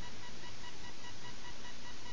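Steady hiss of recording background noise, with faint, steady high-pitched electronic tones running through it.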